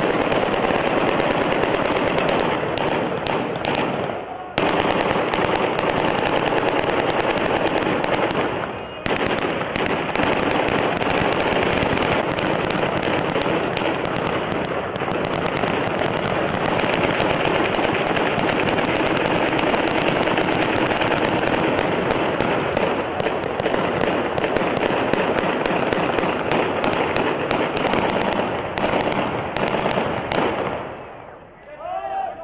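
Dense, continuous automatic gunfire, many rapid shots overlapping, with men's voices shouting over it. It dips briefly twice, about four and nine seconds in.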